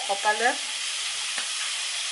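Chicken and bell pepper frying in a pan, a steady sizzle throughout, with a short vocal sound just after the start.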